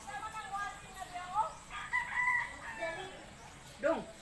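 A rooster crowing, heard faintly, with its long held call from about a second and a half in to about halfway through.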